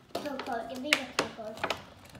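A few sharp clicks and taps of the box's cardboard and plastic packaging being handled, under a quiet voice.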